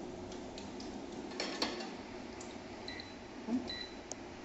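A few light taps and clicks of tableware against a plate over steady low room noise, with two faint short high tones near the end.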